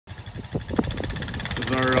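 Tracked ATV's engine running under load as it tows a hot tub on a sled, with a few knocks in the first second.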